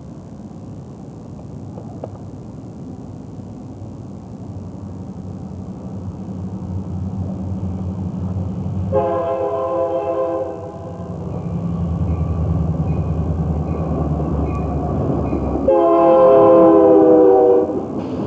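Approaching Union Pacific diesel locomotives, their engine rumble growing steadily louder, sounding two long blasts of a multi-tone chord horn about nine seconds in and again about sixteen seconds in. The second blast is the louder and closer, just before the locomotives pass close by.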